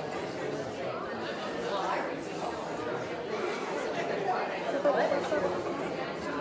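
Many people chatting at once, overlapping conversations of a congregation gathered in the pews with no single voice standing out.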